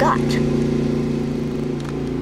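Steady low mechanical hum from a motor or engine running, with an even, unchanging pitch.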